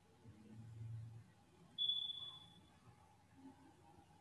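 A single high ping about two seconds in, starting suddenly and fading away over about a second, over a quiet room with a faint low rumble in the first second.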